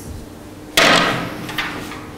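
A sharp knock about three-quarters of a second in, dying away over half a second, then a smaller knock near the end.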